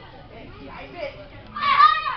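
Faint background chatter, then a loud, high-pitched child's shout about one and a half seconds in.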